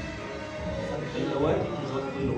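Background music with steady held tones, and a voice coming in over it about a second and a half in.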